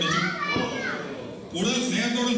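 Voices in a large hall: a high, child-like voice rising and falling in the first second, then a lower voice holding a steady pitch.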